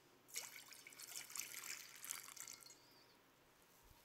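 Water poured from a metal pitcher into a basin, splashing. It starts suddenly just after the beginning and runs about two and a half seconds before trailing off.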